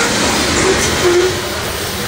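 A freight train's coal hopper cars rolling past, steel wheels clattering steadily on the rails, the sound easing a little toward the end as the last cars go by.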